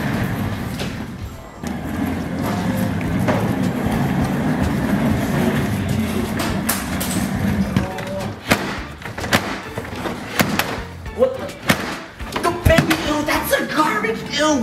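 A plastic baby walker's wheels rolling over a hardwood floor with a steady low rumble, then from about eight seconds in a run of sharp knocks and bangs from the lid of a stainless steel kitchen trash can being pushed and banged. Music plays underneath.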